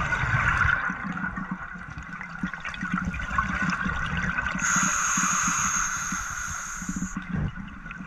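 Scuba diver's regulator breathing heard underwater: a bubbling gurgle of exhaled air, with a steady hiss of an inhalation through the regulator starting about halfway in and lasting about two and a half seconds.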